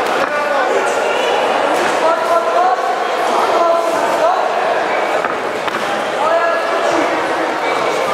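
Several voices calling out around a kickboxing ring, echoing in a large sports hall, with a few dull thuds of gloved punches and kicks landing.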